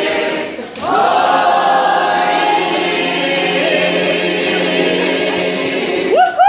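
Mixed choir of men's and women's voices singing gospel: after a brief break about a second in, the voices hold one long sustained chord.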